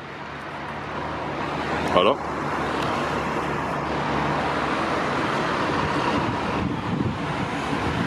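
Road traffic on the adjacent road: vehicle engine and tyre noise swelling over the first few seconds, then holding steady.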